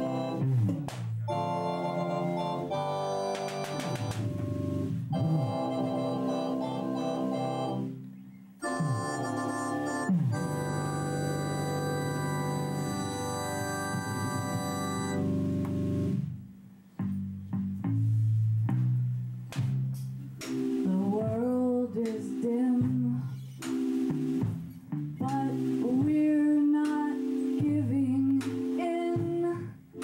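Live band music: electric organ chords held for the first half, breaking off briefly twice, then a woman's singing voice comes in over the organ about two-thirds of the way through.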